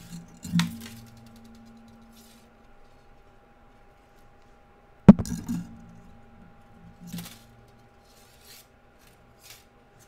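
Thin sterling silver half-round wire being pulled through and coiled by hand around a bundle of square wires, with a sharp clink just after the start, a much louder one about five seconds in, and a few faint ticks toward the end.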